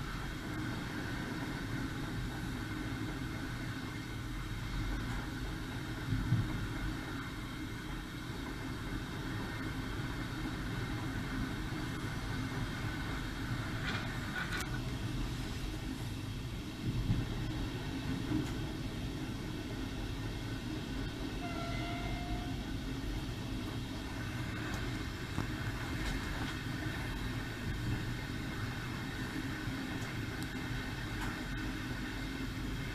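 Passenger train running along the track: a steady rumble of wheels and running gear, with two louder knocks, about a third of the way in and a little past halfway.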